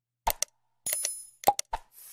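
Sound effects of an animated like-and-subscribe button graphic: a pair of short clicks, a brief bell-like ding about a second in, then another quick run of clicks.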